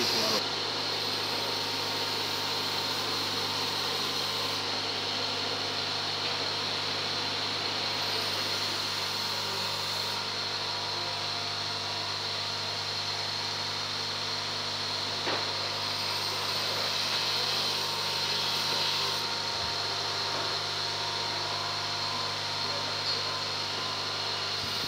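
A steady mechanical hum with a thin high whine, unchanging throughout, with a single faint click about fifteen seconds in.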